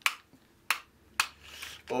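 Left-hand shifter of an L-TWOO RX hydraulic 12-speed road groupset clicking three times, about half a second apart, as its front-derailleur thumb trigger is pushed in by hand with no cable fitted. The trigger is really stiff and not smooth, and needs a level of force the owner finds uncomfortable.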